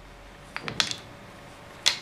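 Thick size-12 plastic knitting needles clicking lightly against each other as stitches are worked: a few quick clicks about half a second in, then one sharper click near the end.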